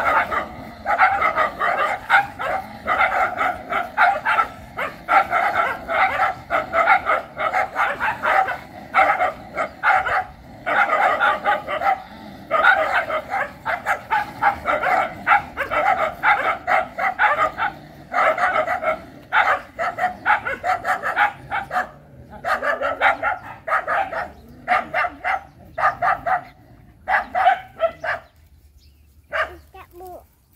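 Dogs barking at each other in a confrontation: rapid, nearly continuous volleys of sharp barks that thin out and stop near the end.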